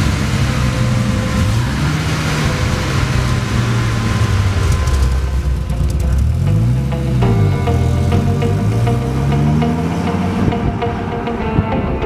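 Bristol Fighter's V10 engine being revved, its pitch rising and falling several times, with music playing over it.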